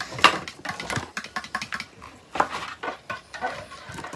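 A fork clicking and scraping against a plate while eating: a quick run of short, irregular clicks, the sharpest one just after the start.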